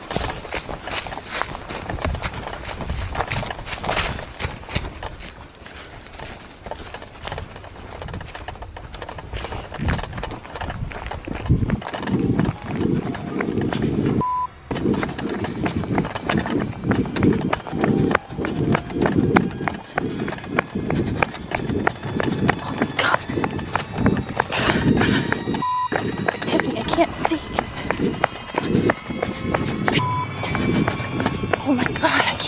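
People running over the ground: fast, irregular footsteps with heavy panting and breathless voices. Two short single-pitch beeps cut the sound out, about halfway through and again near the end, in the way a censor bleep does.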